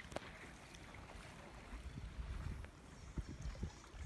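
Wind rumbling on the microphone over an open shoreline, with gusts coming and going, and the soft wash of small waves. A few faint knocks are heard about three seconds in.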